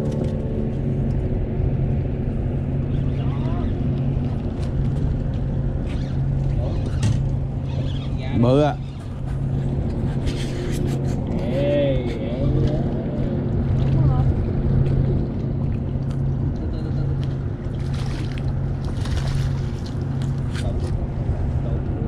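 A boat's outboard motor idling, a steady low hum that pulses slightly.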